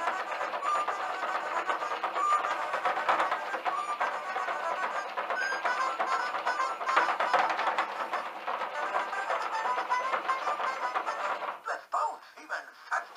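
Disney Pounce 'n Bounce Tigger electronic plush toy playing a bouncy electronic tune through its small speaker as it walks, over a fast clicking of its mechanism. The sound cuts off near the end.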